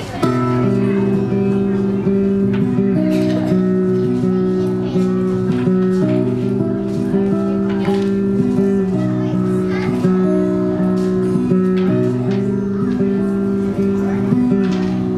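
A steel-string acoustic guitar played solo: ringing chords with picked melody notes in a steady rhythm.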